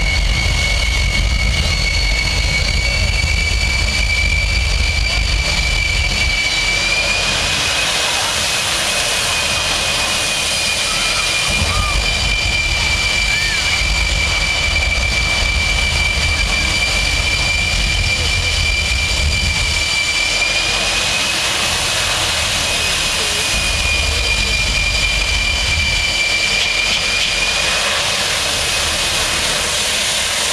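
Large jet engine running steadily at high power, a high turbine whine over a low rumble. The whine rises slightly about seven seconds in and drops back about twenty seconds in.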